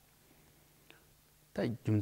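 A short near-silent pause with one faint click, then a man's voice resumes speaking Tibetan about one and a half seconds in.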